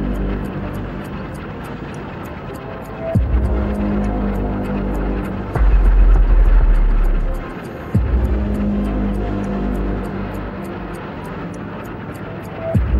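Soundtrack of a heavy, low engine-like rumble with a fast steady ticking of about four ticks a second, restarting abruptly in sections a little over three and eight seconds in, with a louder low surge between about five and a half and seven and a half seconds.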